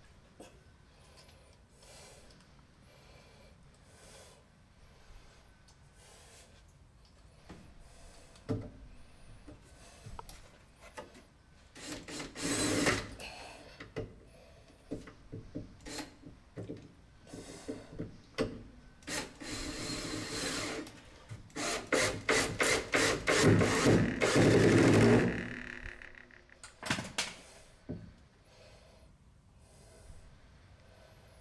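Screws being driven into a wooden 2x4 backing to anchor a shower valve: scattered creaks and knocks, a loud rasping burst about twelve seconds in, then a longer run of rapid, evenly spaced clicks that stops about five seconds before the end.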